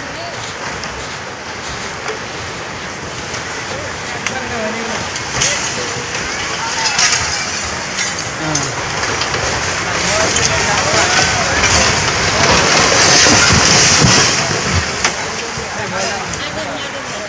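A concrete building collapsing into a flooded river: a loud, continuous rush of churning water and crumbling debris, with a crowd of onlookers shouting. The noise swells louder in the second half.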